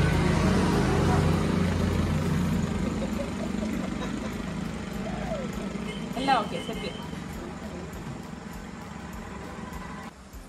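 A motor vehicle engine running steadily close by, slowly fading away. A short, high sliding sound stands out about six seconds in.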